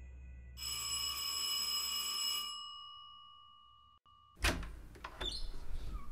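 A doorbell rings once, starting about half a second in, its tone dying away over the next few seconds. A little after four seconds comes a sudden loud thunk and clatter, a front door being opened.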